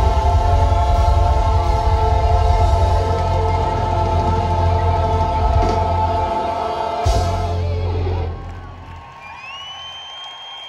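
Live rock band with lead singers and a choir holding a long final chord, closed by a hit about seven seconds in, after which the sound dies away. Near the end a rising whistle comes from the audience.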